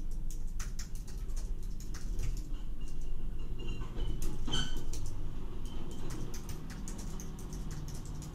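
Computer keyboard being typed on in irregular runs of key clicks, over a steady low hum.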